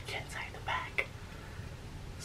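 A man's several short breathy, whispered sounds within the first second, straining as he reaches behind his back, with a small click about a second in.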